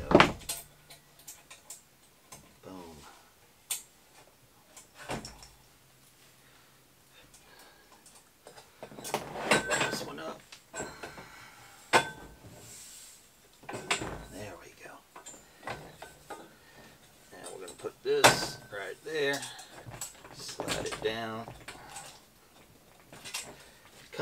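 Tubular metal side-rail frames of a bicycle cargo trailer being handled and slotted into the trailer's metal bed: scattered clanks and knocks of metal on metal, a few of them sharp, with quieter handling between.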